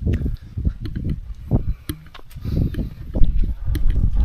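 Strong wind buffeting the microphone: irregular low rumbling gusts that swell and drop, with a few faint clicks among them.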